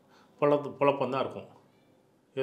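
A man's voice speaking a short phrase, starting about half a second in and trailing off before the end.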